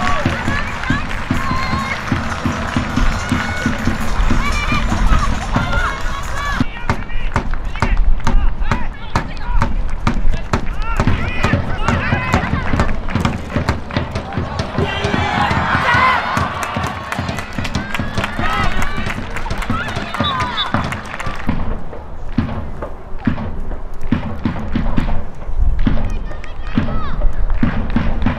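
Background music with a steady beat, with voices over it.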